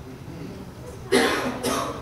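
A man coughing twice, about a second in, the two coughs about half a second apart.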